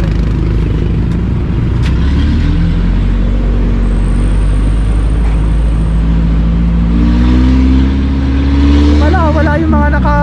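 Engine and road noise of a utility truck, heard from its open rear bed as it drives. The engine pitch rises as the truck speeds up in the last few seconds.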